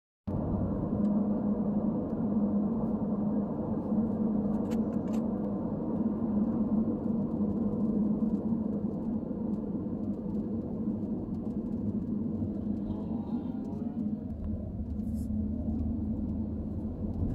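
Car driving, heard inside the cabin: steady engine and tyre road noise with a constant low hum. A couple of faint clicks come about five seconds in.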